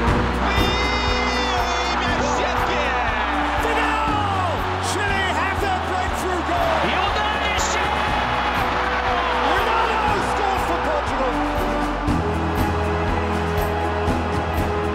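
Background music for a highlights montage, with sustained bass notes that change every few seconds and a light steady tick over them.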